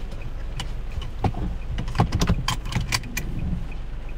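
Inside a car cabin: a steady low hum from the car, with a string of irregular small clicks and taps.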